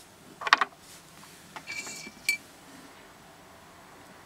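Small rough opal pieces clicking and clinking against a hard surface and each other as one stone is put down and the next picked up: a sharp cluster of clicks about half a second in, then lighter taps and a short ringing clink near the middle.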